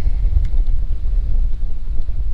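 Wind buffeting the microphone: a steady low rumble that rises and falls.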